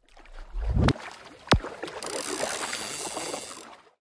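Outro sound effects: a rising whoosh that cuts off suddenly, a sharp hit, then a hissing, crackling wash of noise that fades away.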